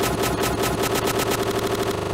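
A rapid, even rattle of about ten strokes a second over a steady pitched hum, like a machine-gun burst.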